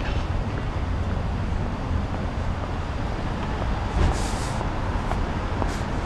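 Steady low rumble of outdoor city background noise, like distant traffic, with a brief hiss about four seconds in.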